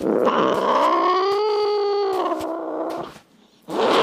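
A cat's long drawn-out yowl lasting about three seconds, rising slightly in pitch, then dropping and fading out. A short hiss follows near the end.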